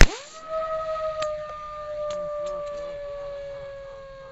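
A single .22 LR rifle shot strikes a CO2 cartridge, followed by a steady whistle that slowly drops in pitch for several seconds as gas vents from the punctured cartridge.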